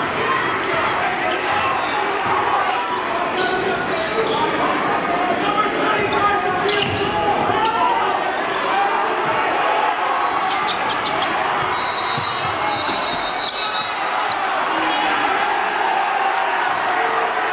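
Live game sound in a high school gym: a basketball bouncing on the hardwood court amid steady crowd chatter, with scattered short thuds of play.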